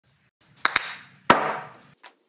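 Two wooden blocks knocked together: two quick sharp knocks, then a third louder knock that rings and dies away over about half a second.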